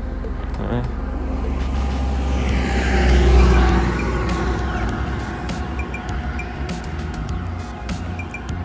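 A road vehicle passing on the highway, swelling to its loudest about three seconds in and then fading away, over a steady low rumble.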